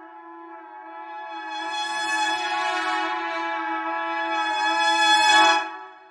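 Sampled orchestral brass from Hidden Path Audio's Battalion library in Kontakt, playing a preset as one long held brass sound over a steady low tone. It swells louder and brighter, peaks about five seconds in, then dies away near the end.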